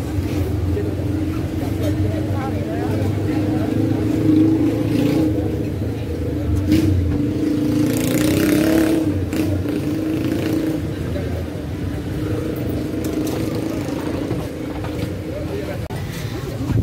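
A steady motor hum under background voices, with a short hiss about halfway through.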